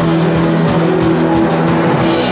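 Live punk rock band playing: distorted electric guitars holding a sustained chord over the drum kit.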